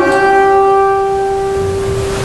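Double bass, bowed, holding one high, steady note.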